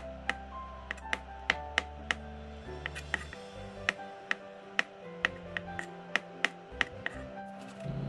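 Chef's knife striking a plastic cutting board as black olives are sliced: sharp taps, about two to three a second, over background music.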